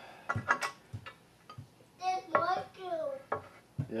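A few light clicks and knocks as glued wooden pieces are clamped by hand, in the first second, then a high-pitched voice calling out for about a second.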